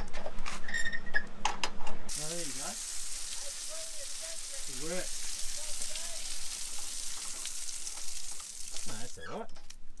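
Shower running: a steady hiss of spraying water that comes on abruptly about two seconds in and stops near the end.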